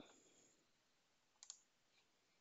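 Faint computer mouse clicks in near silence: one click at the start and a quick pair of clicks about one and a half seconds in.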